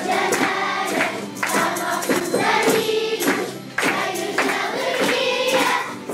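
A group of young children singing janeiras, Portuguese New Year songs, together in chorus, over a regular percussive beat.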